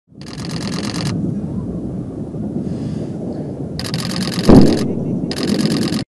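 Steady low rumble of outdoor field audio, with a single heavy thump about four and a half seconds in. A high hiss cuts in and out abruptly three times.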